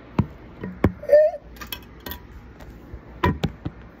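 Handling noise of a phone held close: a few sharp taps and knocks of a hand and long fingernail against it, two near the start and two close together near the end. There is a brief vocal sound about a second in.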